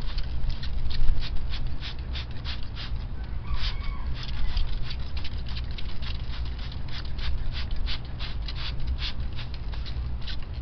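A toothbrush scrubbing a plastic car headlight lens in quick back-and-forth strokes, about four scratchy strokes a second, over a steady low rumble.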